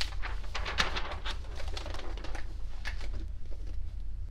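Large paper chart pages being turned over by hand: rustling and crisp crackles of paper, busiest in the first three seconds and dying away near the end, over a steady low hum.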